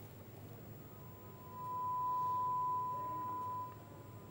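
A single steady pure tone, like a broadcast line test tone, rising in about a second in, holding level, then cutting off shortly before the end, over faint line hiss.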